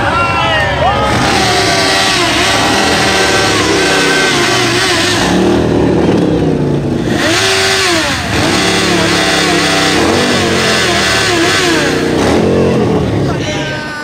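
A motorcycle engine running as it is ridden slowly through a dense crowd, with many voices shouting over it.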